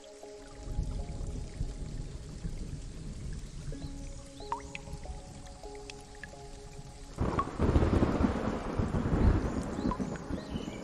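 Soft, slow ambient music of held tones over steady rain with a low rumble of thunder. About seven seconds in, a much louder rush of thunder and heavy rain swells up and carries on, with a few scattered drips.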